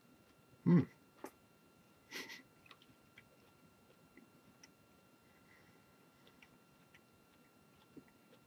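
A person chewing beef jerky with the mouth closed: faint scattered clicks and ticks of chewing. A short low sound about a second in and a brief hiss about two seconds in stand out.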